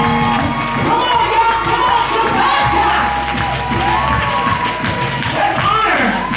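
Praise break: lively music with tambourine and hand-clapping, and the congregation cheering and shouting over it.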